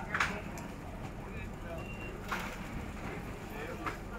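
Open-air market ambience: a steady low rumble with faint background voices and a few sharp clacks, one near the start, one midway and one near the end.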